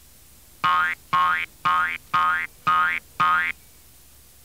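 Six springy cartoon "boing" sound effects in a row, about two a second, each a short pitched twang that rises, for a kangaroo's jumps.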